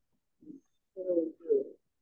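A dove cooing: three coos, a short one about half a second in, then two longer ones close together in the second half.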